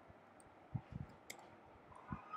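Faint computer keyboard keystrokes: a few soft taps about three-quarters of a second in, then a single sharper click.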